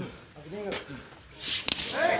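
Professional wrestlers brawling on the arena floor: short shouts and grunts, then near the end a sharp crack of an impact inside a loud rush of noise.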